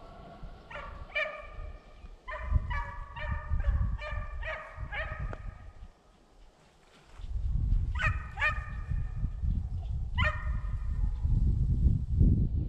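Hunting hounds barking, a quick run of barks through the first half, then a few more after a short pause. Low wind rumble on the microphone underneath.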